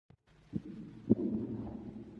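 Low muffled rumble with two soft thumps, about half a second and a second in.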